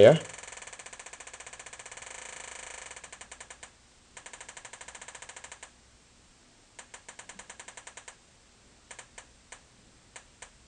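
Homemade metal detector's speaker putting out a fast buzz of clicks that slows about three seconds in into broken runs of clicks, then single clicks a few a second near the end. The click rate follows a nickel passed at the search coil: fast while the coin is near, slower as it moves away.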